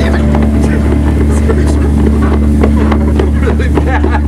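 People's voices over a loud, steady low hum.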